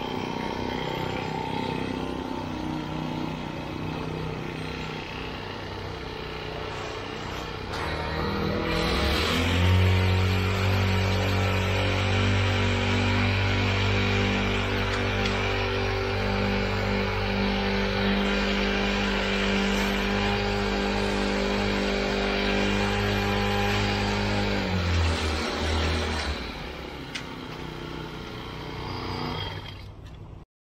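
Small Honda engine on a power screed running steadily while the screed is pulled across wet concrete. It speeds up and gets louder about nine seconds in, holds there, and drops back to a lower speed near the end.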